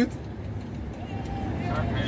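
Steady low rumble of a car's road and engine noise, heard from inside the cabin while driving on a highway. Faint voices come in near the end.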